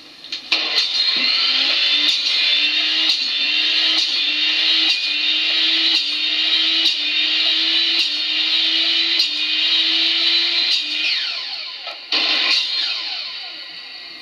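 Power miter saw's motor running loud and steady for about ten seconds, then spinning down with a falling whine near the end, followed by a short second burst of noise.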